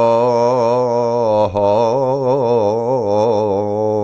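A man singing a traditional Greek folk song from Nigrita, drawing out long, wavering, ornamented notes in one breath. There is a brief catch about a second and a half in.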